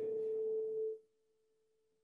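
A man's drawn-out hesitation sound, 'uhhh', held on one steady pitch so that it thins into a near-pure tone, then cutting off about a second in.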